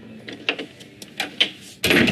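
A door in a house being handled: a few short clicks and knocks, then a louder rattle near the end as it opens.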